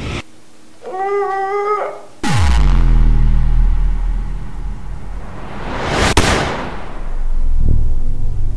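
A woman's strained, high-pitched whine, then a loud sound effect about two seconds in: a steep falling sweep into a deep, sustained rumble. A rising whoosh follows, peaking in a sharp crack about six seconds in, and another swell builds near the end.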